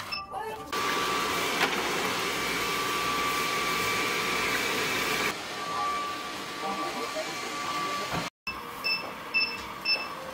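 Schmidt robot vacuum cleaner running: a steady whirring of its motor and brushes with a faint whine, louder for the first few seconds, changing abruptly between cut-together shots. Near the end the sound drops out briefly, then comes a run of short high blips about three a second.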